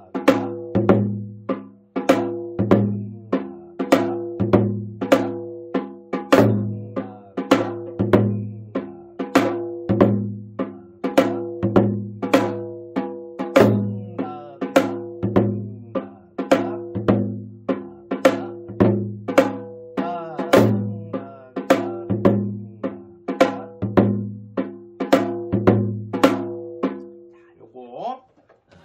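Janggu played continuously in the basic gutgeori rhythm (deong–da–gidak, gung-gung–da–gidak, gung-gung–gidak–da). Deep ringing strokes of the mallet on the bass head mix with sharp cracks of the thin stick on the treble head in a steady, repeating cycle. The drumming stops just before the end.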